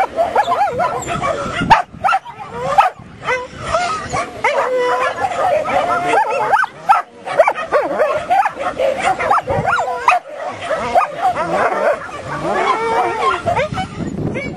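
A dog barking and yipping over and over, with a few sharp loud barks, as it runs an agility course.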